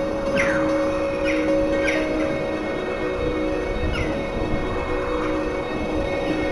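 A steady droning music bed, with several short bird cries falling in pitch laid over it at irregular intervals.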